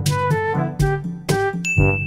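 Outro music of short, struck pitched notes in a quick run. Near the end a bell ding sound effect starts and keeps ringing.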